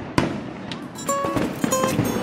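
Firework sound effect: a sharp bang just after the start, followed by several more pops and crackles, with a bright tune of short notes coming in about a second in.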